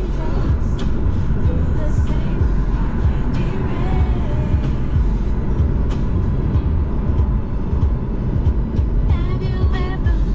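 Steady road and engine rumble inside the cabin of a moving car, loud and low, with music playing along.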